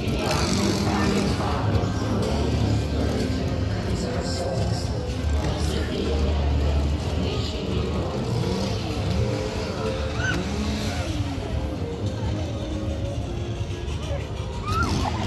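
A steady low rumble of a vehicle engine, mixed with music and people's voices.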